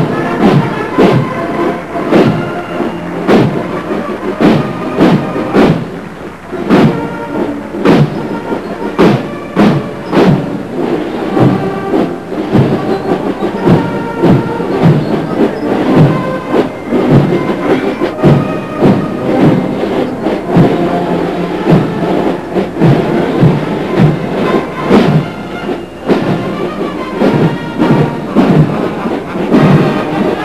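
Massed military brass band playing a march: brass and sousaphones over snare and bass drums, which keep a steady beat about twice a second.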